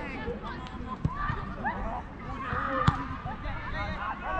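Players' distant shouts and calls during a football match on an outdoor artificial pitch, with two sharp thuds of the ball being struck, a lighter one about a second in and a louder one near three seconds.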